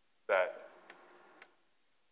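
Chalk squeaking and chattering against a blackboard during one written stroke. It starts sharply about a quarter second in, fades over about a second, and has a couple of light taps near the end.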